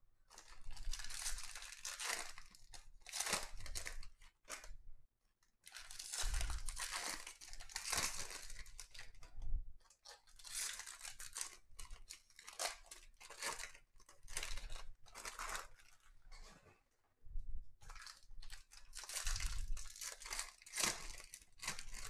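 Foil wrappers of 2021 Topps Series 1 baseball card packs being torn open and crinkled by hand, in repeated bursts with short pauses between, as cards are pulled out and stacked.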